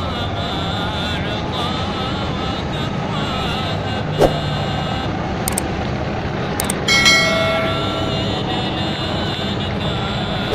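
A bus driving past close by, its engine running under a steady wash of street and crowd noise. A short click about four seconds in, and a bright chime-like effect about seven seconds in that fades out.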